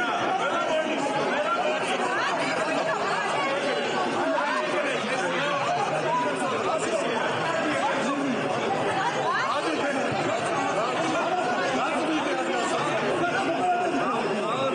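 A crowd of men shouting and arguing over one another during a scuffle in a large hall, a steady din of many overlapping voices with no single speaker standing out.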